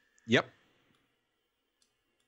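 A man's voice saying a single short "yep" near the start, then near silence with a couple of faint clicks.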